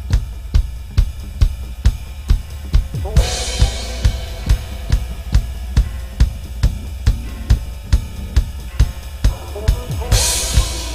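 ATV aDrums electronic drum kit played live through a PA over a backing track with a steady low bass: a kick drum on a steady pulse of a little over two beats a second under snare and hi-hat, with a crash cymbal about three seconds in.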